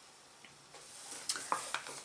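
Felt-tip marker scratching on a plastic shampoo bottle while the bottle is handled and turned: nearly silent at first, then faint scratching with a few light clicks in the second half.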